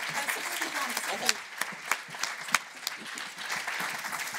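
Audience applauding, with a few single claps standing out sharply above the general clapping.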